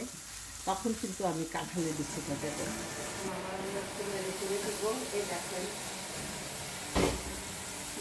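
Spice paste frying and sizzling in a non-stick wok while being stirred and scraped with a wooden spatula, as the masala is fried down (koshano) until its colour deepens. A single sharp knock about seven seconds in.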